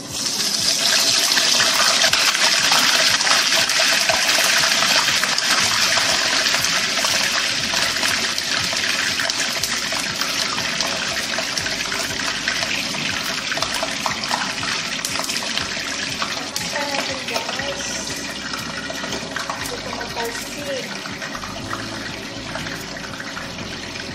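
Whole flour-coated fish frying in hot cooking oil in a nonstick frying pan. It sizzles loudly the moment it goes into the oil, then more softly as it cooks.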